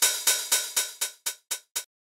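An open 909 hi-hat sample repeating in an even run of about four to five hits a second, its decay and attack driven by note velocity. The early hits ring out longer like an open hat, and toward the end they turn shorter and quieter, closer to a closed hi-hat, as the velocity falls.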